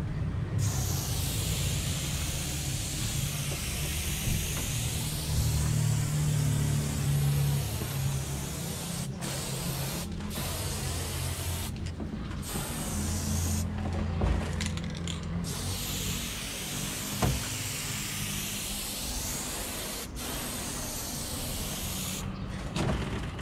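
Aerosol spray can of silver chrome paint hissing in long sprays as the fill goes on, broken by several brief pauses. A steady low rumble sits underneath.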